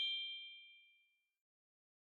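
The ringing tail of a bright, bell-like 'ding' sound effect, the cartoon 'idea!' chime: a few high tones that die away within about a second and a half.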